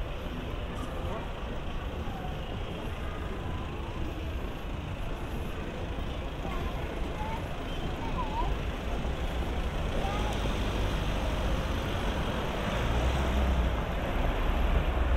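Busy city street ambience: road traffic passing steadily, with a low engine rumble building near the end as a vehicle comes close, and snatches of passers-by's voices.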